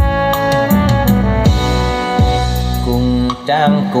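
A recorded Vietnamese song played loudly through a pair of large three-way speaker cabinets, each with a 40 cm and a 30 cm woofer and a horn, driven by a CA8.0 power amplifier as a sound test. This is the instrumental passage: held instrument notes over a drum beat, with the singer coming in at the very end.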